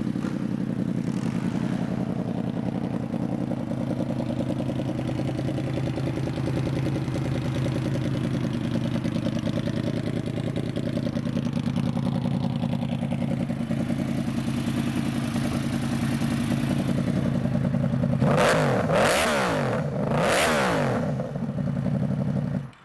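2014 Yamaha YZF-R1's 1000cc crossplane-crank inline four idling steadily through aftermarket Toce slip-on exhausts. Near the end it is revved twice, each blip rising sharply and falling back to idle.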